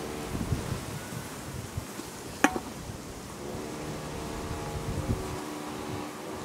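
A beagle puppy nosing and tugging at a plastic food wrapper in dry grass: scattered crinkles and crackles, with one sharp snap about two and a half seconds in. A steady droning hum underneath fades out early and comes back for the second half.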